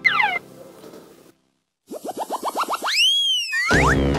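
Cartoon-style comedy sound effects: a falling whistle-like glide at the start, a brief silence, then a quick run of about ten short rising chirps and one long glide that rises and falls. Background music with a beat comes back in near the end.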